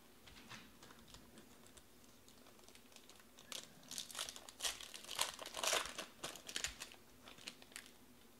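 Foil wrapper of a football trading-card pack being torn open and crinkled by hand. A run of crackling starts about three and a half seconds in and lasts a few seconds, loudest in the middle, ending with a few light clicks.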